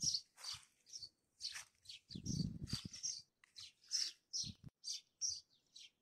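Small songbirds chirping in a rapid run of short, high chirps, about three a second, faint in the background.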